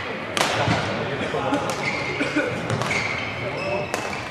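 Badminton rally: several sharp racket strikes on the shuttlecock, with shoes squeaking briefly on the court floor and voices in the hall behind.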